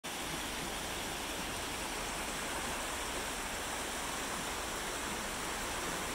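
A shallow stream rushing steadily over rocks and riffles, a constant even wash of water.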